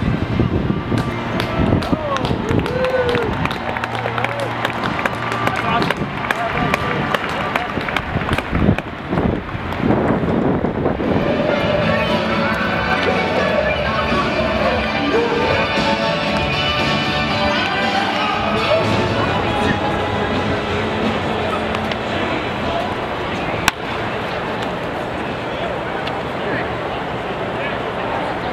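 Stadium public-address loudspeakers echoing across the ballpark, carrying a voice and music from a ceremony. The voice is blurred by the echo, and the music swells through the middle.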